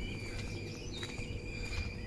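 Quiet outdoor ambience: a few faint, short chirps of small birds over a thin, steady high tone and a low rumble.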